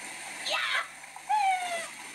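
A woman crying out during a hot-water belly massage, first a short high shout, then a long falling wail, reacting to the heat of the water on her skin.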